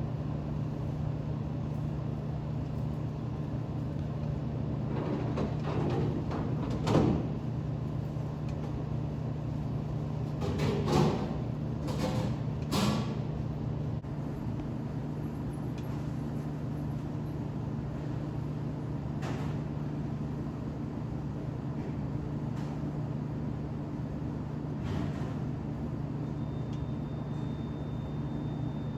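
Steady low machine hum of the room, with a few small clicks and rustles of beads being slid onto a pipe cleaner by hand; the clearest come about 7, 11 and 13 seconds in.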